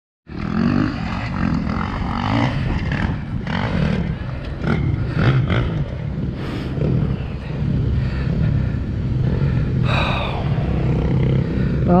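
Engine running at low speed under a steady rumble of wind buffeting a helmet-mounted microphone, with scattered knocks and rattles from the ride.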